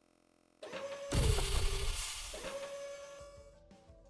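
Edited-in transition sound effect: a short swell, then a crash-like burst about a second in with a held tone over it, fading out over the next two seconds or so.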